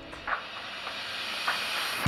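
A whoosh transition sound effect: a steady hiss of noise that swells and brightens, then cuts off suddenly at the end.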